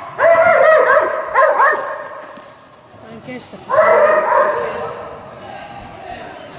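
A dog barking with high, excited yips in three spells: near the start, at about a second and a half, and at about four seconds.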